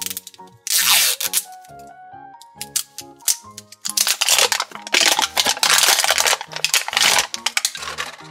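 The outer wrapping layer of a LOL Surprise ball being peeled and torn off by hand over background music: a short rip about a second in, then a longer, louder stretch of ripping from about four to seven seconds.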